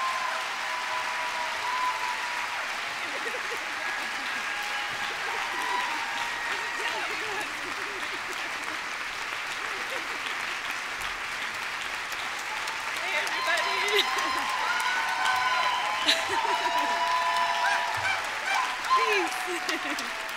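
A large audience applauding and cheering, with whoops and shouts from many voices over the clapping. It swells a little louder about two thirds of the way through.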